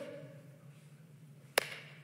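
Quiet hall room tone as the echo of a spoken word fades, then a single sharp click about one and a half seconds in.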